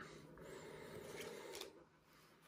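Faint rustle of glossy baseball trading cards being slid through a hand-held stack, with a couple of light ticks. It stops about three-quarters of the way through.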